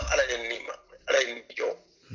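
A man speaking in three short phrases with brief pauses between them; only speech.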